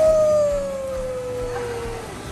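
A young child's long held vocal cry, one drawn-out note that rises briefly at its start and then slowly falls in pitch for about two seconds before stopping near the end, over the wash of splashing pool water.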